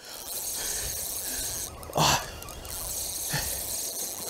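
Fast-flowing channel water rushing steadily, with a short sharp burst of noise about halfway through and a smaller one near the end.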